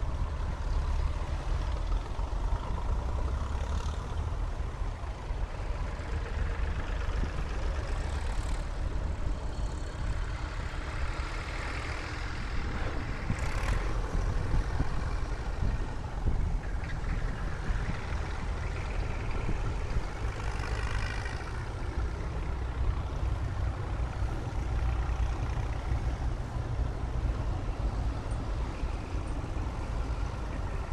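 A line of vintage tractors driving past one after another, their engines running in a continuous low rumble, with a few louder passes around the middle.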